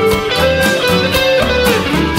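Instrumental passage of a Latin rock cha-cha-cha song: an electric guitar holds long lead notes that bend near the end, over drums and bass.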